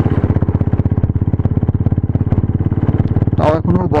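Motorcycle engine with an aftermarket exhaust running steadily while riding, a rapid, even beat of exhaust pulses.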